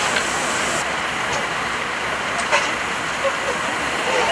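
Steady hissing from the standing C57 1 steam locomotive, with voices faintly in the background and a few light clicks.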